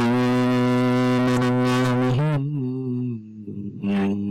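A man's voice chanting Quran recitation, heard over a Skype call: one long held note, a short wavering turn about two seconds in, a lower, weaker stretch, and a new held note near the end.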